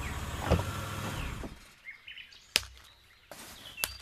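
A Toyota Innova's engine running as the car drives up, with birds chirping, stopping suddenly about a second and a half in. A few sharp clicks follow, the loudest just past the middle.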